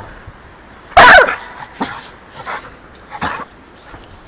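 A pit bull–type dog barks once, loudly, about a second in. A few fainter short sounds follow.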